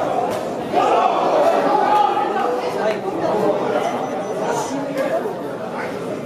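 Spectators' chatter and calls in a gymnasium hall, several voices overlapping with no clear words, louder from about a second in.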